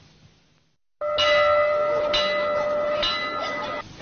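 A bell struck three times about a second apart, each strike ringing on into the next, after a second of near silence; the ringing cuts off shortly before the end.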